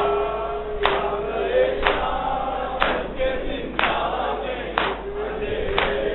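Men chanting a Shia noha lament in unison, kept in time by matam, hands striking chests, about once a second.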